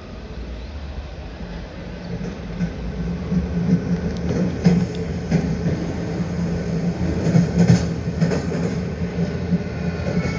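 Sound effect of a metro train running: a steady low rumble with rattling wheel clatter, growing louder over the first few seconds and then holding steady.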